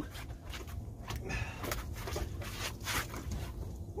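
Irregular knocks and slaps of a landed catfish thrashing on a boat's deck as it is handled, over a steady low rumble.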